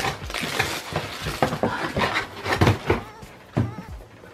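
Cardboard box and the packaging inside rustling and crinkling as a boot is pulled out, with many quick crackles. The handling dies down about three seconds in.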